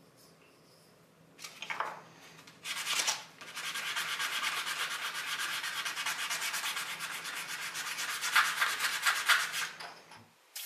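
A black walnut tool handle being hand-sanded by rubbing it back and forth on a sheet of fine-grit sandpaper on a wooden bench. After a near-quiet second or so come a few separate scraping strokes, then rapid continuous scrubbing from about three and a half seconds in, with a few louder strokes near the end.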